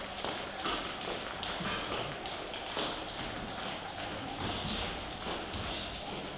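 A skipping rope ticking against a hard gym floor in quick, even light taps, several a second.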